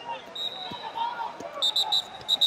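Referee's whistle: a fainter steady blast, then a quick run of short, loud blasts near the end, stopping the action on the mat.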